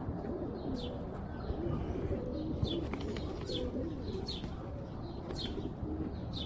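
King pigeon cooing repeatedly in low, wavering coos: the call of a male puffed up with its tail fanned in courtship display. Short high chirps recur about once a second over the cooing.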